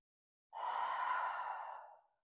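A woman's long audible exhale through the mouth, starting about half a second in and lasting about a second and a half: the breath out on the effort of pulling a dumbbell back over the chest in a pullover.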